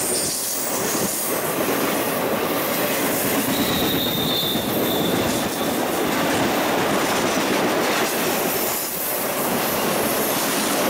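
Intermodal freight train's flatcars loaded with highway trailers rolling past close by: a steady, loud rumble and rattle of steel wheels on rail, with a faint high wheel squeal for a couple of seconds around the middle.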